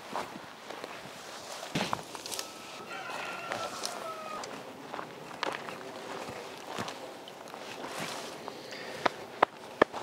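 Footsteps crunching on gravelly dirt, with leafy cut branches rustling and scraping as they are dragged along the ground and dropped onto a pile. Scattered short crunches and snaps run through it.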